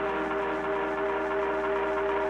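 Live band playing a sustained electronic drone: several steady held notes forming an unchanging chord, with no beat.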